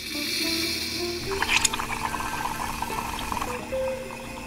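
Coffee machine pouring coffee into a cup, a steady stream with a few sharper spurts about one and a half seconds in, over soft background music.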